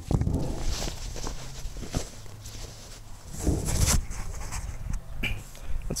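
Cotton camo boonie hat being turned inside out by hand: fabric rustling and handling noise in irregular bursts, loudest a little before the middle.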